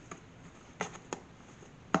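Hands handling small pieces of bread dough on a silicone baking mat: a few soft, separate taps and contact sounds, about four in two seconds, over a quiet room.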